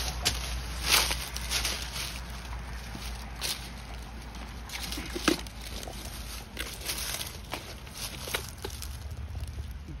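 Dry leaves and bark rustling, with irregular plastic knocks and clicks, as a black plastic ammo-can geocache is pulled from its hiding spot at a tree's base and its lid is unlatched and swung open.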